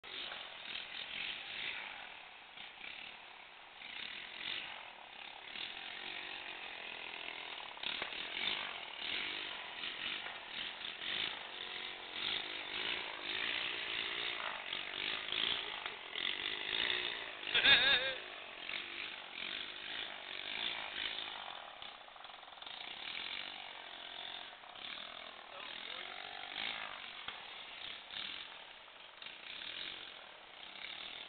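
Small engine of a motorized bicycle running, its level rising and falling as the bike is ridden, with people's voices around it. A short, loud burst with a sweeping pitch comes a little past halfway.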